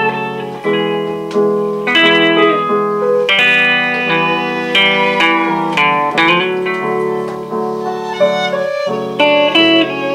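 Instrumental break in a live song: a guitar picks out a melody of single notes over held chords, with no singing.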